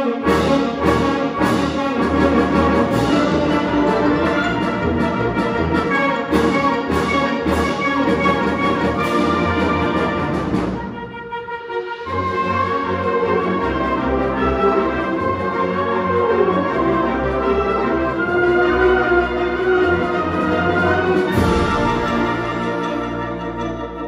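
A student concert band of woodwinds, brass and percussion playing, with sharp percussion strikes about twice a second through the first half. Around eleven seconds in the music briefly drops away, then the band comes back in with sustained chords.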